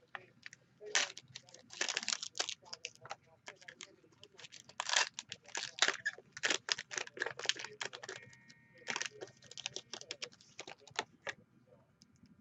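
Foil wrapper of a baseball card pack crinkling and tearing as it is ripped open by hand, in quick irregular crackles, followed by the cards being slid out.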